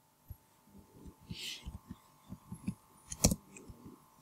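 Computer keyboard being typed on: a run of light, irregular key taps with one sharper, louder keystroke a little past three seconds in, the Enter key ending the line. A faint steady electrical hum lies underneath.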